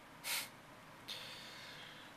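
A person's short, sharp breath close to a microphone, about a quarter of a second long, comes just after the start. A fainter breathy hiss follows from about a second in.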